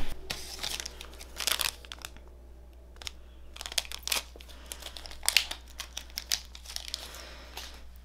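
Wrapper of an HCG pregnancy test strip being handled and torn open, a series of short crinkles and tears.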